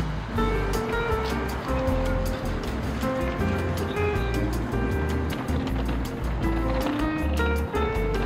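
Background music with a steady drum beat and a bass line.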